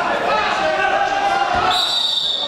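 Spectators and coaches shouting in a large echoing hall. Near the end a referee's whistle blows one long, high, steady blast.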